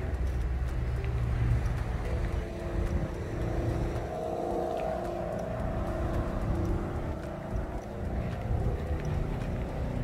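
Steady low rumble, with the faint hum of a distant engine that swells for a few seconds in the middle and then fades.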